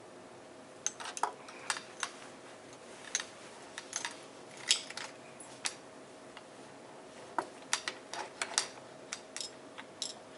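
Short, sharp clicks and taps of a small screwdriver and metal lens parts being worked and handled while a Sigma 500mm f4.5 telephoto lens is taken apart. They come in two spells, about one to six seconds in and again from about seven to nine and a half seconds in.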